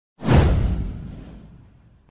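A whoosh sound effect for an animated intro, with a deep rumble under it, starting sharply a moment in and fading away over about a second and a half.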